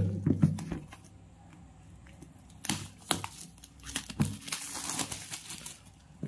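Plastic wrapper on a smartphone box crinkling as it is handled, in short bursts from about halfway in.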